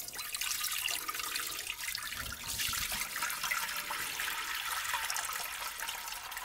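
Water poured steadily from a plastic bucket into a shallow glass dish, splashing as it fills.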